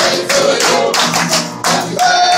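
Live birthday song with guitar and singing, the table clapping along in a steady rhythm of about four claps a second.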